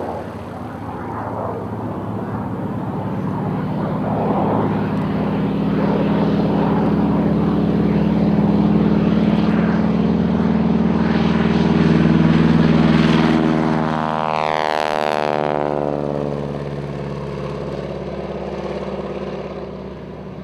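de Havilland Canada DHC-2 Beaver's radial engine (Pratt & Whitney R-985 Wasp Junior) and propeller running at takeoff power, growing louder as the aircraft takes off. About three-quarters of the way in the pitch drops as it passes, and the sound then fades as it climbs away.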